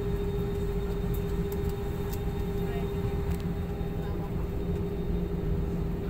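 Steady cabin noise inside an airliner on the ground: a low rumble with a constant mid-pitched hum running under it.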